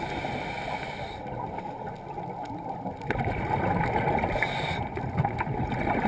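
Scuba diver's regulator breathing underwater, heard through a GoPro housing: a steady muffled rumble with bubbling exhalations that come and go, louder at the start, again from about three seconds in to nearly five, and at the very end.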